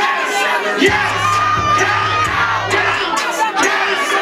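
Club crowd shouting and yelling over a loud hip-hop beat. The beat's bass cuts out for about the first second and again near the end.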